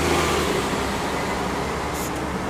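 City street traffic: a vehicle's low engine hum fades away about half a second in, leaving steady road noise.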